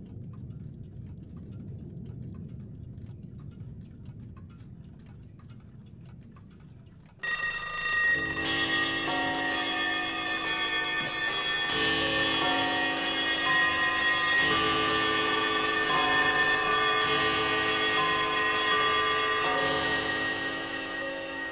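Recorded clocks ticking faintly over a low hum, then about seven seconds in many alarm clocks, bells and chiming clocks all go off at once and keep ringing loudly together.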